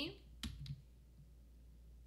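A sharp click, with a brief follow-on click, from the computer about half a second in, while the trading chart on screen is being scrolled. A low, steady electrical hum runs underneath.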